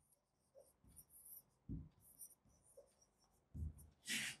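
Faint scratching and tapping of a stylus writing on the glass of an interactive display, with two soft low thumps, one near the middle and one near the end.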